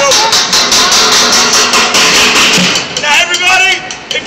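Fast drumming on upturned plastic five-gallon buckets and metal pans, a rapid run of hits that thins out about three seconds in, as voices rise over it.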